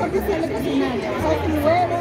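People talking: a voice over the chatter of a crowd in a busy room.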